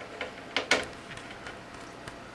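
A few short, sharp clicks and ticks, the loudest two close together a little after half a second in, then fainter ticks.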